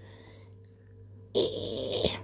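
A steady low hum, then about one and a half seconds in a loud breathy sigh, with the spoken word "this".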